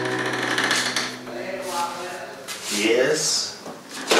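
Indistinct human voices over a steady noisy background, with a few small knocks.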